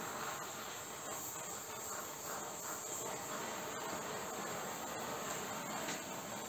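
Oxy-fuel gas torch flame hissing steadily as it heats an old aluminium part, burning off the soot coating to anneal the metal.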